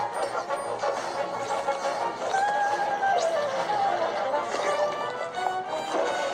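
Background music: held, gently gliding melodic tones over a steady backing.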